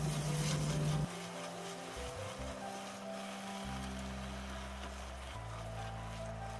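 Soft background music of held notes that change every second or two, over a faint steady hiss of tomato sauce and vegetables sizzling in the frying pan.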